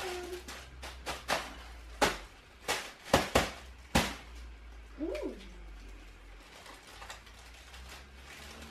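A run of about seven sharp clicks and snaps from handling things, bunched between one and four seconds in. About five seconds in there is one short voice sound that rises and falls in pitch.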